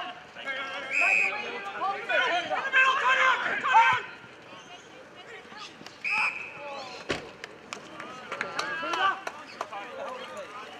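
Umpire's whistle blown in two short, high blasts, about a second in and again about six seconds in, amid players' shouts; a single sharp thud comes about seven seconds in.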